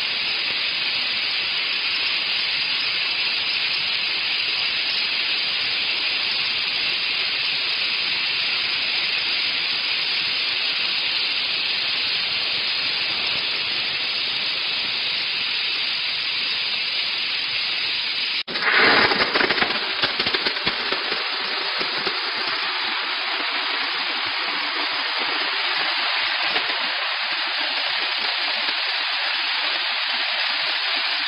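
Steam jetting from the hand-held spray gun of a steam car washing machine, a loud steady hiss. About two-thirds of the way through it breaks off abruptly into a couple of seconds of louder crackling spurts, then settles back into a steady hiss.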